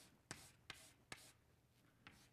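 Chalk rubbing on a blackboard in a few short, faint strokes as a square is shaded in.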